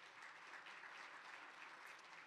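Faint scattered applause from an audience, an even patter with no voice over it.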